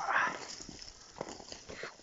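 Footsteps and rustling through snowy brush, with scattered short crunches and snaps, and a brief louder voice-like sound at the very start.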